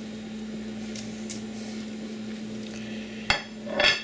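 A ceramic plate knocking against a pot as corn cobs are put off it into soup: a few light clicks, then a sharp knock and a short ringing clatter near the end, over a steady low hum.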